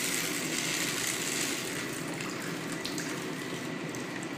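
Water poured from a bottle in a steady stream onto the waterproof paper liner in an Incinolet incinerating toilet's stainless steel bowl, standing in for urine.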